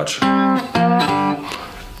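Amplified three-string cigar box guitar in open G, played with a slide resting lightly on the strings: two sustained picked notes of a blues riff, each held about half a second, then ringing down.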